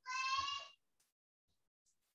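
A single short, high-pitched meow from a cat, lasting under a second.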